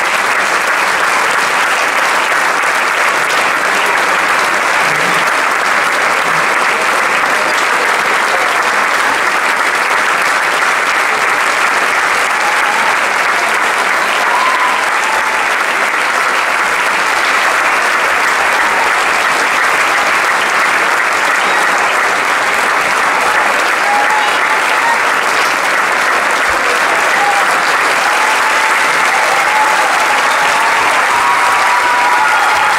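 Theatre audience applauding steadily, a dense, even clapping that holds at one level throughout, with a few voices calling out over it in the second half.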